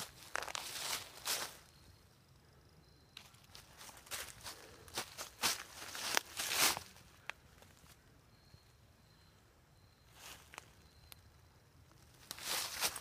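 Footsteps shuffling through dry fallen leaves, rustling and crunching in irregular bunches with quiet pauses between.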